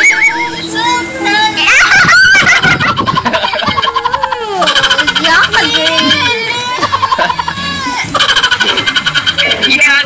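Audio of a TikTok clip playing back: a voice with a strongly wavering, sing-song pitch over music, broken twice by a rapid buzzing rattle, once about three seconds in and again near the end.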